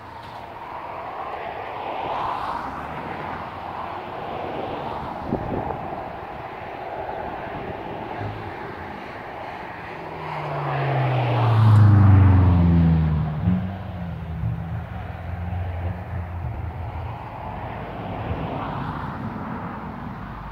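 Steady outdoor background noise, with an engine passing by: it swells to its loudest about twelve seconds in, its note falling as it goes past, then fades.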